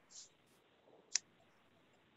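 A single sharp, faint click about a second in, after a brief soft hiss near the start, over low room tone picked up by a video-call microphone.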